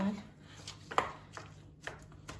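Gloved hands pressing and spreading soft cookie dough in a small metal springform pan, with two sharp knocks about a second apart as the pan is handled.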